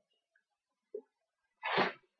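A man's single short, sharp burst of breath, like a sneeze, near the end, after a faint tap about a second in.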